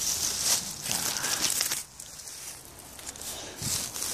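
Dry brush and grass rustling and crunching underfoot as someone moves through dead vegetation, loudest in the first two seconds and quieter after.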